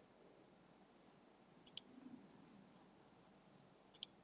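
Computer mouse button clicked, each click a quick pair of sharp ticks: one about 1.7 s in and another at the end. Otherwise near silence.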